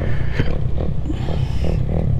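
Dirt bike engine idling with a steady low rumble, and a single click about half a second in.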